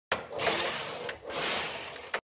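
Knitting machine carriage pushed twice across the needle bed, each pass a clattering mechanical rasp lasting under a second, with a click at the start.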